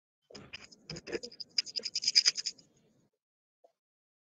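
Scratchy rustling noise made of rapid clicks, stopping a little before three seconds in.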